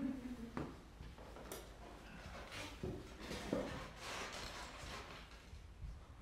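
Quiet handling noise as players settle at a grand piano: soft rustling and a few light knocks, with no music yet.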